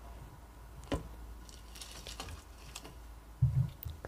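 Faint tapping and scratching from a bearded dragon moving about close to a microphone in an ASMR clip, heard through a phone speaker: a sharp tap about a second in, light scratches after it, and a dull low thump near the end.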